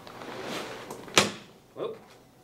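A man sitting down on a wheelchair's Vicair air-cell cushion: fabric and cushion rustling for about a second, then one sharp thump as his weight lands on the seat.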